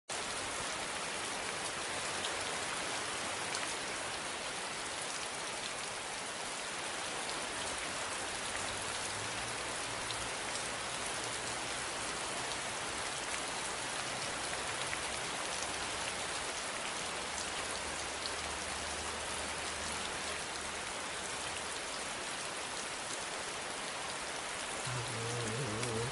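Steady rain falling, an even hiss with scattered drop ticks. A low musical note comes in about a second before the end.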